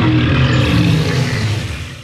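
A loud, low cartoon monster roar sound effect, held and then fading away near the end.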